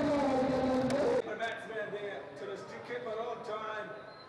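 People talking, a man's voice among them. The sound drops sharply about a second in, and quieter talk follows.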